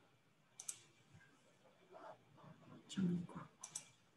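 A few faint, sharp clicks of a computer mouse as a presentation is being shared in a video call, with a quiet murmur of a voice about three seconds in.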